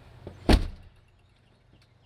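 Knocking on a wooden front door: a light tap, then one loud, sharp knock about half a second in.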